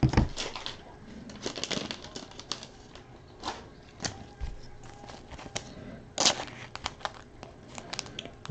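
Trading cards being handled at the table: scattered light clicks and taps, with a sharper snap about six seconds in.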